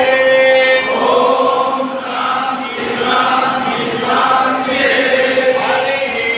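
Many voices chanting together in unison in long held notes, stepping from one pitch to the next, as a group yoga chant.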